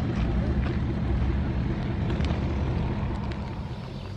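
Motor vehicle engine running nearby, a steady low rumble that fades away over the last second.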